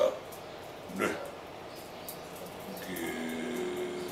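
A man's voice speaking haltingly: a short word about a second in, a pause, then a drawn-out hesitation sound held steady near the end.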